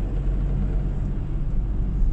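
Ford Transit 2.4 TDCi diesel van driving, its engine and road noise a steady low rumble heard from inside the cab.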